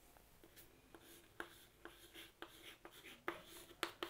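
Chalk writing on a chalkboard: faint, short taps and scratchy strokes as letters are written, starting about a second in and coming more often toward the end.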